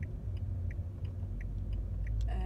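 Steady low rumble inside a car cabin, with a car's indicator relay ticking evenly about three times a second.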